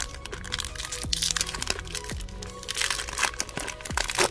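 Crinkling and crackling of a Topps Merlin trading-card pack's foil wrapper as it is handled in the hands, in bursts about a second in and again near three seconds, over background music.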